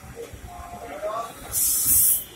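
A short, sharp burst of air hissing, lasting under a second near the end, from the train's air brakes being applied as it is brought to a stop at the platform. Faint platform voices come before it.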